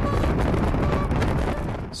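Wind rushing over the microphone of a camera mounted on the outside of a moving car, mixed with the car's road noise: a steady, loud rush with a heavy low rumble.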